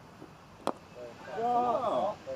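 A single sharp crack of a cricket bat striking the ball, followed about half a second later by a man's voice calling out loudly.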